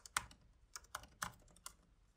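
Computer keyboard typing: a short run of faint key clicks at an uneven pace.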